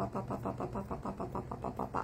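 A woman's voice rapidly repeating a short pitched syllable, about seven times a second, imitating popcorn popping ("pop, pop, pop"). It stops suddenly at the end.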